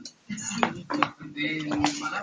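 A few sharp clinks and knocks, like hard objects tapping together, three of them spread through the moment.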